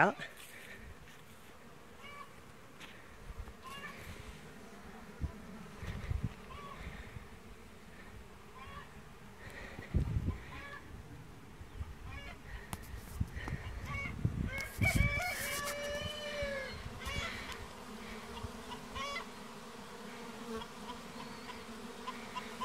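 Many honeybees buzzing as they fly around a hive entrance, a steady hum. The colony is very active, bursting out after monsoon rain has kept the bees inside, and the beekeeper wonders whether they are stir-crazy. About two-thirds through, a bird calls briefly, and there are two dull thumps.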